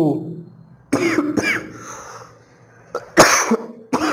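A man clearing his throat and coughing, with the loudest cough, short and harsh, about three seconds in.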